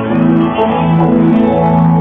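Amplified solid-body electric guitar playing a run of held notes, each sustained for about half a second and stepping in pitch, in the closing bars of a country song.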